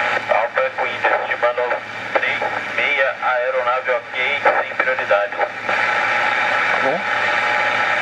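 Airband regenerative receiver playing through a loudspeaker: a steady radio hiss with voice transmissions coming through for the first few seconds, then hiss alone. These are radio conversations between a control tower and aircraft.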